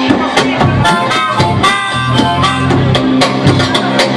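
Live blues band playing: an amplified harmonica, cupped to a vocal microphone, plays held and bent notes over acoustic guitar, bass guitar and drums keeping a steady beat.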